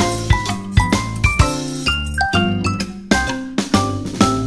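Background music: short, bright pitched notes over a steady beat and bass line.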